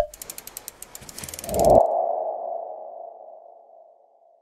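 Logo-animation sound effect: a sharp hit, then a quick run of ticks for just under two seconds, then a single ringing tone that swells and fades away.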